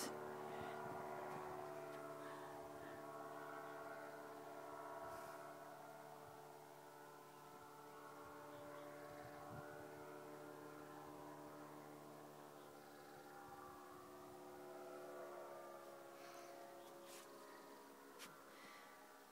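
Faint, steady drone of a distant powered paraglider's engine, holding an even pitch and rising and falling a little in loudness.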